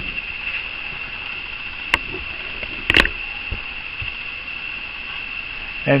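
Steady high-pitched chorus of night insects, such as crickets or katydids, with two sharp clicks about two and three seconds in.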